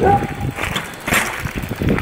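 Mountain bike riding over a gravel driveway, tyres crunching and rattling, with a sharper clatter about a second in as it lands a bunny hop.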